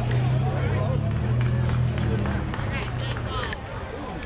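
Indistinct voices of spectators and players talking and calling out, over a steady low hum that drops away a little after three seconds in.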